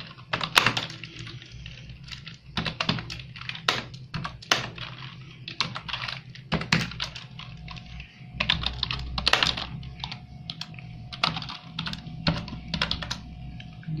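Typing on a laptop keyboard: irregular key clicks in quick runs separated by short pauses, some strokes louder than others.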